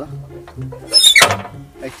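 A brief, loud, high-pitched squeal about a second in, over steady low background music.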